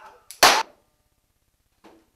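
A single loud revolver gunshot about half a second in, sharp and brief, just after a short cry.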